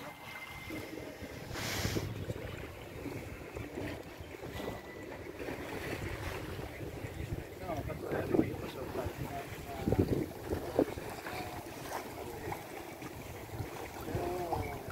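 Wind buffeting the microphone and water washing along the hull aboard a sailing ketch, with louder gusts now and then.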